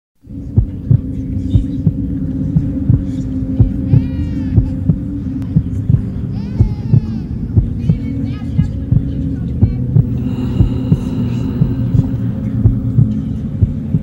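Intro of a rap track: a steady low drone with regular heartbeat-like thumps, two to three a second. A wavering high sweep sounds twice, about four and six and a half seconds in, and faint high tones join from about ten seconds.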